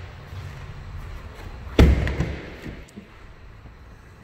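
A pickup truck's door shut with one heavy slam about two seconds in, followed by a lighter knock.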